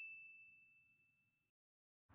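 The fading tail of a single high, bell-like ding sound effect, ringing out and dying away in the first moments. Near silence follows.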